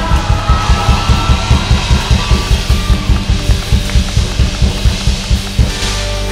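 Live worship band playing an instrumental rock section with a fast, even pounding beat, about four to five hits a second, and no singing. The beat stops near the end.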